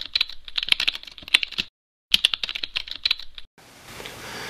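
Computer keyboard typing sound effect: two runs of rapid key clicks with a short break just before the midpoint, then a faint hiss near the end.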